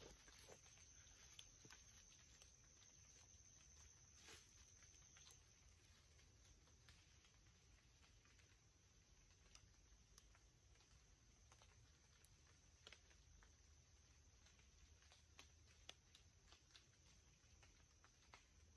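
Near silence: faint outdoor room tone with scattered soft ticks and a faint steady high whine that fades out about five seconds in.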